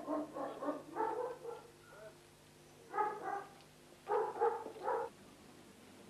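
A dog barking in short bursts: a run of barks at the start, two about three seconds in, and three more a second later.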